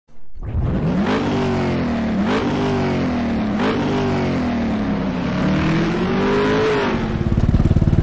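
An engine revving: three quick rises in pitch, each easing back down, then one long slow climb. About seven seconds in it gives way to a steadier, rougher engine running near idle.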